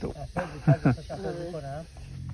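A person speaking in short phrases, with no other clear sound.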